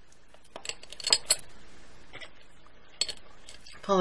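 Small, quick clicks and ticks of beads and metal findings knocking together on a plastic bead board as beading wire is threaded back through a crimp: a few clicks about a second in and another couple near three seconds.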